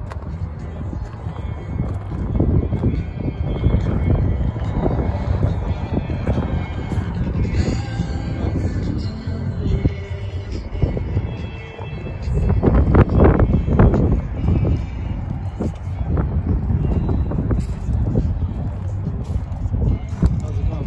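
Wind buffeting the microphone in a gusty low rumble, over faint background music and distant voices from the crowd.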